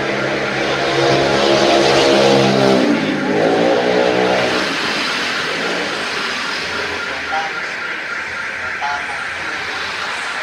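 A motor vehicle's engine passing close by on the street, loudest about two seconds in, its pitch dipping and rising again around three seconds in before fading into steady traffic noise.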